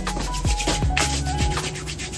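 Rubbing and scratching noise on a handheld phone's microphone, a dense run of crackles, with faint music playing underneath.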